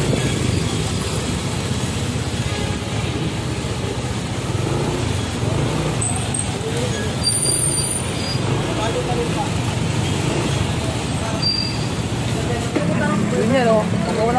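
Street traffic noise with a vehicle engine running steadily, and people's voices in the background.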